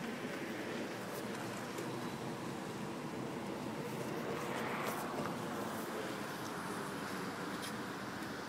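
Steady, fairly quiet outdoor background noise with a faint low hum and no distinct events.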